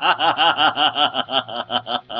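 A man laughing: a rapid run of short 'ha' pulses, about eight a second, slowing slightly near the end.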